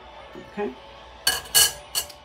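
Metal spatula clattering as it is set down, two sharp knocks with a short metallic ring about a second and a half in, and a lighter knock near the end.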